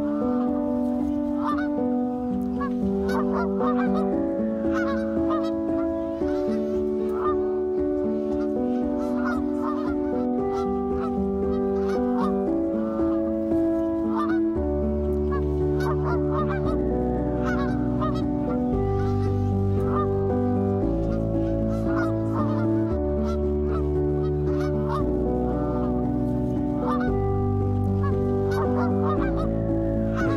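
Canada geese honking at intervals over a background music track of sustained chords, with a bass line entering about halfway through.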